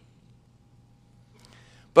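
A faint steady low hum in a quiet gap between spoken sentences, with a soft breath-like noise shortly before a man's voice resumes at the very end.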